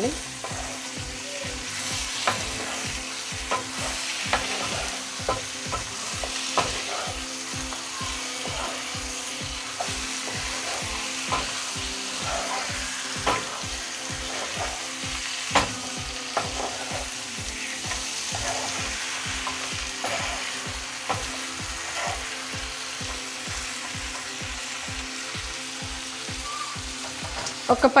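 Raw chicken pieces sizzling in masala in a nonstick frying pan while a wooden spatula stirs and turns them, with scattered knocks of the spatula against the pan, the loudest about halfway through.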